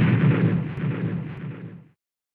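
A deep crashing, rumbling sound effect, like stone ground breaking apart. It dies away and stops shortly before the end.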